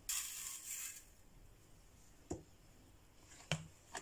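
Granulated sugar poured from a glass into a mixing bowl onto soft butter, a dry hiss lasting just over a second. A few light knocks follow.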